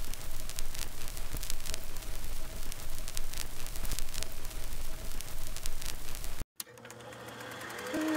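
Crackling, hissing static with irregular clicks and a low hum, like old recording surface noise. It cuts off suddenly about six and a half seconds in, and a quiet sound then fades in toward the end.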